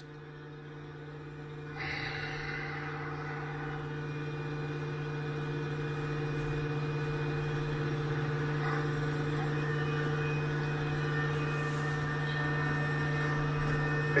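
Steady electrical hum from a Cirrus SR20's powered-up avionics and electrical system. About two seconds in, a steady rushing, fan-like noise comes on and slowly grows louder.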